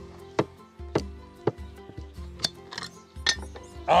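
Several sharp knocks on a glass preserve jar, struck to loosen its tight screw-on lid.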